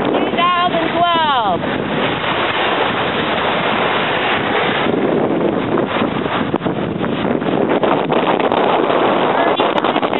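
Wind buffeting the microphone over small waves washing up on a sandy beach: a loud, steady rush. A few high calls falling in pitch sound in the first second and a half.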